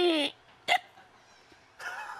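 A person's high voice gliding downward and stopping a quarter second in, then one short, hiccup-like vocal burst. Then a quiet stretch, and a breathy rush of air near the end.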